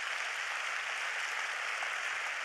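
A congregation applauding: steady clapping from many hands.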